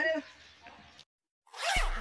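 A trouser fly zipper pulled down once, quickly, near the end.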